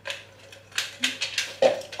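Light knocks and clatters of kitchen things being handled on a worktop, several in quick succession in the second half.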